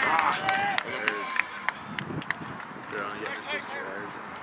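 Several voices shouting at once across an open rugby pitch, loudest in the first second, with a few sharp claps among them. No clear words come through.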